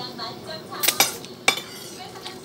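Tableware clinking at a meal: three sharp clicks, two close together about a second in and one about half a second later.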